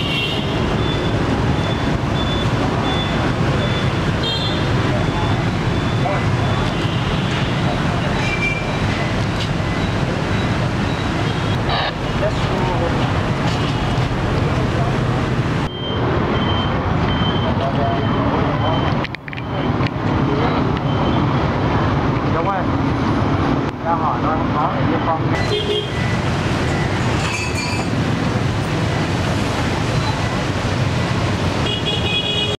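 Busy street traffic, mostly motorbikes, with indistinct voices of people around, a dense steady din. A faint repeating high-pitched tone sounds in the first few seconds and again around the middle.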